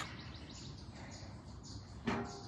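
Faint birds chirping in short, high, repeated calls over quiet outdoor background noise.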